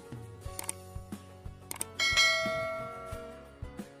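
Subscribe-button animation sound effects: a few sharp clicks, then about two seconds in a bright bell chime that rings out and fades over about a second and a half, over soft background music.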